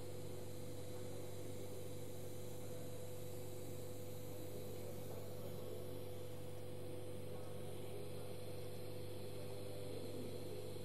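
Steady low electrical hum with a constant higher tone and a faint hiss, unchanging throughout.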